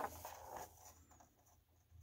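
Faint rubbing and rustling as two wristwatches on fabric and rubber straps are lifted off a table, dying away to near silence within the first second.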